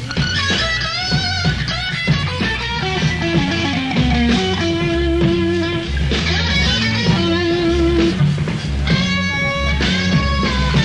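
Live blues-rock band playing a slow blues. An electric guitar carries the lead with string bends and vibrato, running down the neck about halfway through and holding single notes, over bass guitar.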